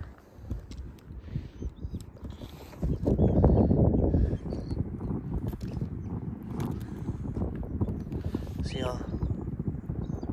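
Wind buffeting the phone's microphone, mixed with the rustle of clothing and a camera being handled, and a louder surge about three seconds in. Faint bird calls come through, with one wavering, falling call near the end.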